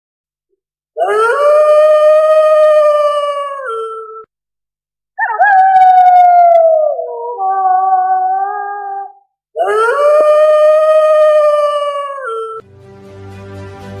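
Wolf howling: three long howls. The first and last are held on a steady pitch and dip at the end; the middle one starts higher and slides down.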